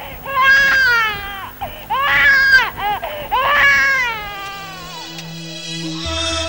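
A voice crying out in three long, high-pitched wailing cries that rise and fall in pitch. Soft sustained music tones come in near the end.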